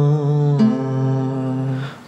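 Male voices holding a sung note on "amor" in two-part harmony, a third voice in parallel sixths with the first voice of a folk polka arrangement. One voice moves to a new note about half a second in, and the singing fades away near the end.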